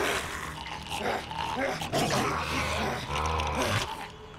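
Animal-like growling and snarling from a humanoid cave creature, the mutant 'Abby' of the show, in rough cries that rise and fall, with a deeper guttural rumble near the end.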